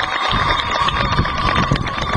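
A steady high ringing tone held for a few seconds, typical of microphone feedback through a public-address system, over low wind rumble on the microphone and scattered sharp clicks.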